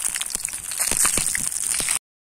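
Pieces of fish deep-frying in hot oil in a pan over a campfire, sizzling with a dense run of fine crackles and pops.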